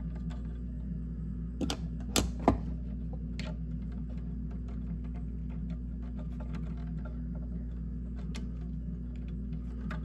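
Small metallic clicks and scrapes of needle-nose pliers working a looped wire off a light switch's screw terminal, with a few sharper clicks about two seconds in, over a steady low hum.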